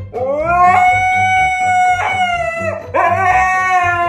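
A husky howling loudly to demand its dinner. One long cry rises and holds steady, breaks off about two seconds in with a falling slide, and a second rising howl starts about three seconds in.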